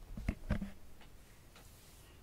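A few short, soft clicks or knocks in the first half-second, then quiet room tone.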